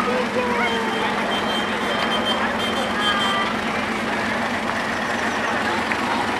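Engines of slow-moving vintage parade vehicles running as they pass, an early open-cab ambulance and then a WWII-style jeep, over a steady low hum. A thin, steady high tone sounds for a couple of seconds starting about a second in.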